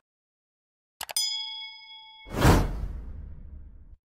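Subscribe-button animation sound effects: a quick double mouse click about a second in, then a bell ding that rings for about a second. A loud whoosh follows and fades away.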